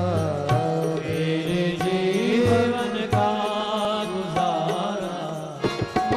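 Hindu devotional aarti music: a voice singing long, gliding notes over instrumental accompaniment, with drum strokes coming in just before the end.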